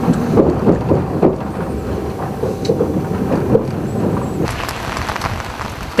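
A passenger train running, heard from inside a compartment: a dense, steady rumble with irregular knocks and rattles. A faint steady whine in it stops about two-thirds of the way through.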